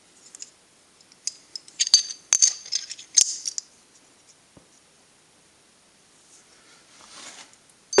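Small metal pieces clinking and tapping against each other as they are handled, a quick run of light metallic clinks with a high ringing tone between about one and four seconds in.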